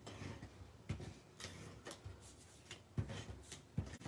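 Faint handling of cardstock on a paper-covered work mat: soft rustles and a few light taps and clicks as the card panel is picked up and moved.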